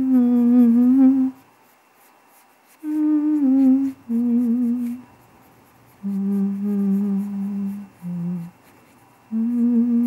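A woman humming a slow, wandering tune in short held phrases with brief pauses between them, her pitch wavering within each note.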